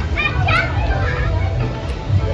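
Children playing and shouting over the chatter of a crowd, with one child's high-pitched shout rising in pitch about half a second in. A steady low rumble runs underneath.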